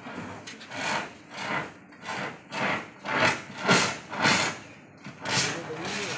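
ABC dry-powder fire extinguisher discharging in a run of about eight short hissing bursts, loudest in the middle, with a brief lull before the last.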